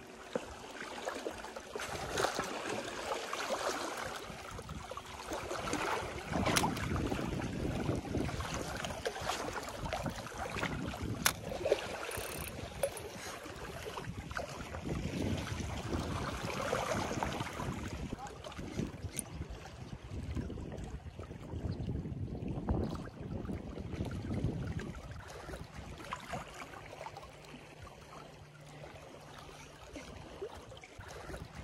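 Small waves washing against a stone seawall, with wind on the microphone. The noise swells and fades in uneven surges, broken by a few sharp clicks.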